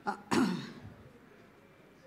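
A person's brief throat clear, about a third of a second in.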